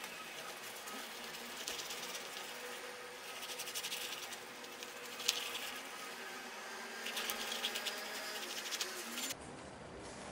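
Plastic squeeze bottle laying a line of white paste onto cloth, heard as a fast buzzy crackle in spells: loudest about four seconds in and again near the end, with one sharp tick about five seconds in. The sound is likely sped up along with the footage.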